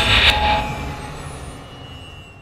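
Jet airliner passing by: loud rushing engine noise over a low rumble, loudest about half a second in and then fading steadily away.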